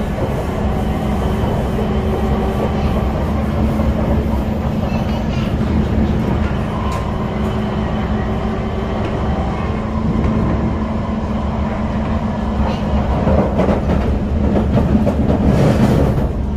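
Kawasaki Heavy Industries C151 metro train running along the line, heard from inside the passenger car: a steady rumble of wheels on rail under a constant drive hum, growing somewhat louder in the last few seconds.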